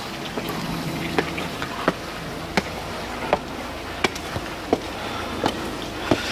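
Footsteps on stone pavement at an easy walking pace, a short sharp step about every 0.7 seconds, over a steady outdoor background hum and rush.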